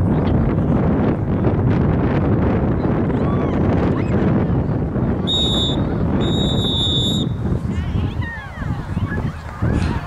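Referee's whistle blown twice about five seconds in, a short blast then a longer one, over a steady rumble of wind on the microphone.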